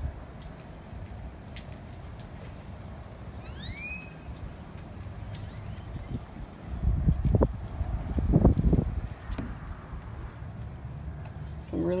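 Low rumbling noise on a handheld phone microphone outdoors. A short bird call of a few quick upward-sweeping notes comes shortly before the middle, and two louder low rumbling bursts follow past the middle.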